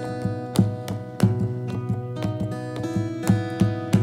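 Takamine acoustic guitar fingerpicked in an instrumental interlude, single notes and chords ringing on with no singing. Firmer plucks stand out about half a second in, just after a second, and a little past three seconds.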